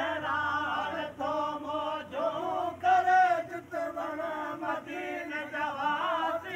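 A man singing a Sindhi devotional song in praise of Medina, unaccompanied, in long held notes that waver in pitch, with short breaks between phrases.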